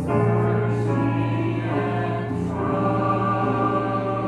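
A church congregation singing a hymn together, many voices in unison, over a keyboard accompaniment.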